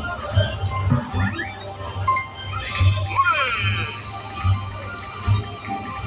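Video slot machine playing its bonus-round music: a pulsing low beat under chiming electronic tones, with a warbling flourish about three seconds in.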